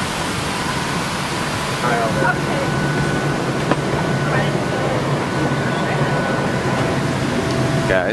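Airliner cabin's air-conditioning running steadily with a low hum while the plane is parked at the gate, with faint passenger voices now and then.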